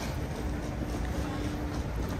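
Underground metro station concourse ambience: a steady low rumble with a thin, steady hum, and a few faint ticks of footsteps on the tiled floor.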